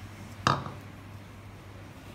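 A single sharp knock about half a second in, a small ceramic bowl set down on a wooden table, over a low steady hum.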